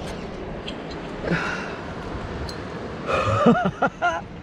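A climber's laboured breathing on a hard lead: a heavy breath about a second in, and a short strained groan with a wavering pitch near the end. Both sit over a steady background rumble.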